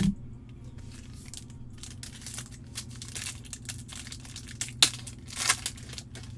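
Foil trading-card pack being torn open and its wrapper crinkled: a run of sharp crackles and rips, loudest in two bursts near the end. A short soft thump comes at the very start.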